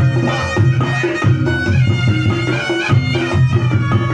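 Javanese kentongan ensemble music: bamboo kentongan and drums keep a steady beat under a reedy, wailing wind melody and a repeating low bass line.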